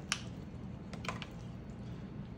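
Wooden spatula stirring a thick, creamy casserole mixture in an aluminium foil pan, with a few faint clicks as it scrapes and taps the foil, near the start and again about a second in.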